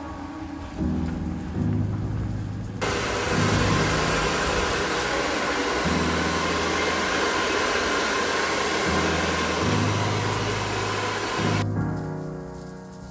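Background music with a bass line; from about three seconds in, the steady, loud rushing of a handheld hair dryer blowing hair, which cuts off abruptly shortly before the end.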